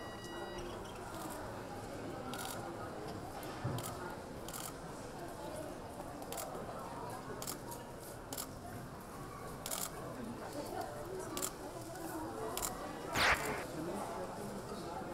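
Camera shutters clicking at irregular intervals over a hubbub of voices in a busy check-in area. A short electronic beep sounds at the very start, and there is a brief louder rush of noise near the end.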